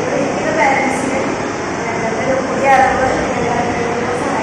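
A woman talking to a group, her voice heard over a steady background noise.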